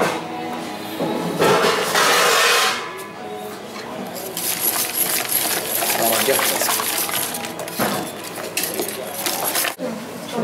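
Wire whisk clinking and scraping against a large stainless steel pot as chopped herbs are mixed into a thick béarnaise sauce. There is a short burst at first, then a longer run of rapid clinking from about four seconds in until just before the end.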